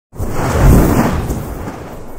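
Whoosh-and-rumble sound effect for an animated channel logo intro, a noise with a deep low end that comes in abruptly, swells to its loudest under a second in and then fades away.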